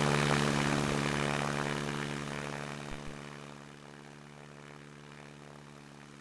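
Stinson 108's engine and propeller at full takeoff power during the takeoff roll, a steady drone of even pitch. It fades away over the first four seconds to a faint level.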